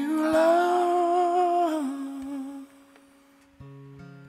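A man's voice holding one long wordless note over a ringing acoustic guitar; the note dips in pitch and fades out about two seconds in. Near the end a new acoustic guitar chord is strummed.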